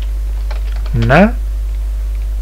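A few quick keystrokes on a computer keyboard about half a second in, typing text into a code editor, over a steady low hum.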